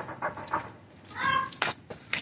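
A short, high-pitched cry lasting about a third of a second, a little past the middle, among a few sharp clicks and knocks.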